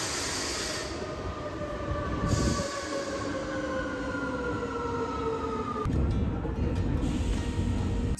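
A metro train pulling into the station, its running noise carrying a whine of several tones that falls slowly in pitch as it slows. The falling whine breaks off about six seconds in and gives way to a duller rumble.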